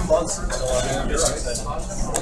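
Indistinct conversation: people talking in the background, no one voice standing out.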